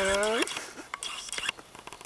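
A person's voice: one short drawn-out vocal sound whose pitch dips and rises again, at the start, followed by faint clicks.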